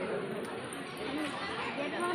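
Indistinct chatter of people's voices, with no clear words.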